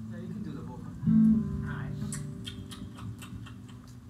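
Electric guitar through an amplifier, picked once about a second in and left to ring and fade slowly.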